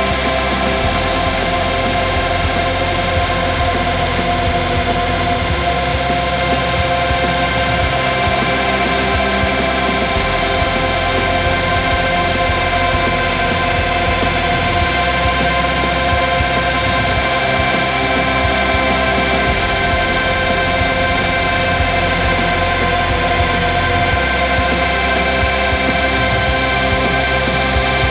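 Instrumental passage of a shoegaze rock song: layered, sustained guitar drone over low bass notes that change every four to five seconds, with rapid cymbal ticks throughout.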